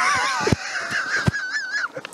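Loud, high-pitched laughter with a wavering, trembling pitch, ending shortly before the end. A couple of short dull thumps come during it.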